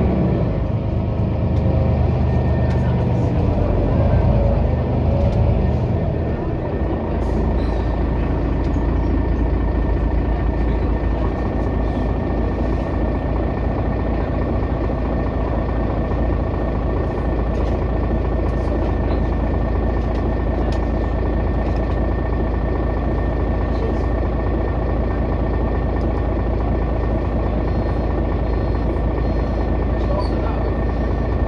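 City bus heard from on board, slowing and coming to a stop in the first few seconds, then standing with its engine idling: a steady low rumble with a constant high whine and a few scattered clicks.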